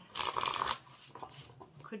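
A tarot deck being shuffled by hand: a dense rustling flurry of cards in the first second, then a few faint card taps.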